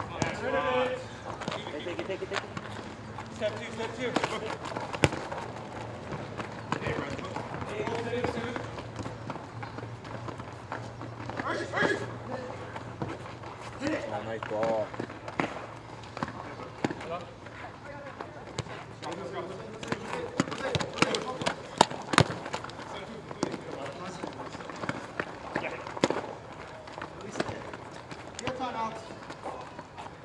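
Soccer players calling and shouting to each other during play, mixed with sharp knocks of the ball being kicked and striking the court, and running footsteps.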